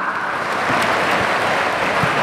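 Crowd applauding: a steady, dense patter of many hands clapping.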